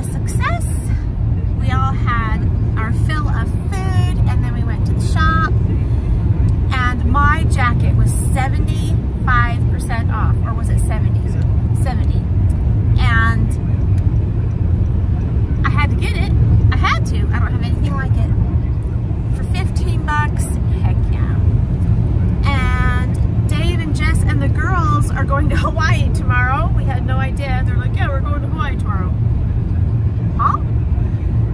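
Steady low rumble of car road and engine noise inside the cabin of a moving car, under a woman talking.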